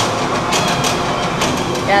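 B&M hyper coaster train rolling out of the station: a steady rumble with a run of clicks about half a second to a second and a half in.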